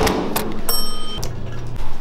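Electronic keypad deadbolt being worked: two sharp clicks of the lock, then a single short electronic beep about a second in.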